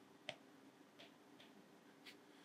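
Near silence with three faint, short ticks spread across two seconds: a stylus tapping on a tablet screen during handwriting.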